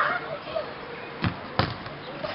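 A football thudding three times as children kick it about a rubber-tiled court, with their voices faint in the background.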